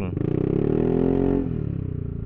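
Yamaha Aerox 155 scooter's single-cylinder engine through a 3Tech Ronin Hanzo aftermarket exhaust in its racing (open) mode, revving up and easing off once under way, then running at lower revs with an even pulsing exhaust note.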